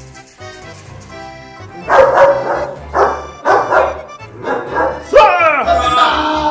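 Background music with a dog barking over it. The barks are loud, short and come about every half second from two seconds in, ending in a rising yelp near the end.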